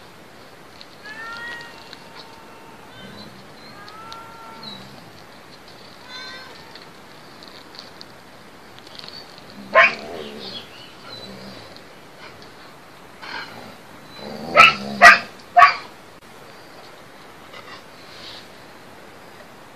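Animal cries in the dark: faint pitched calls in the first few seconds, one sharp loud cry about ten seconds in, then three loud cries in quick succession about half a second apart near the end.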